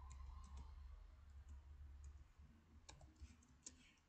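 Faint keystrokes on a computer keyboard: a few scattered clicks in the first half second, then a quick run of them near the end, over a faint low hum.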